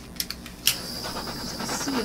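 Small butane torch lit with a few sharp clicks, then its flame hissing steadily as it is passed over wet acrylic paint to pop surface bubbles.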